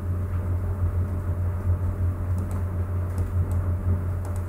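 Steady low hum with a few faint clicks in the second half.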